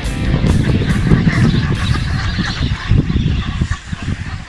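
A large flock of geese calling as it flies over, a dense, irregular clamour of honks that fades near the end.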